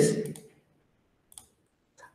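A man's voice trailing off, then near quiet with a single faint, short click about a second and a half in.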